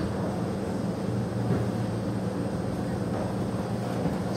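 Steady low hum with an even hiss of room noise, with no distinct events.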